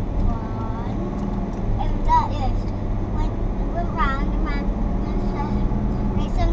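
Steady low drone of a car's engine and tyres heard inside the moving car's cabin, with brief high-pitched voices about two and four seconds in.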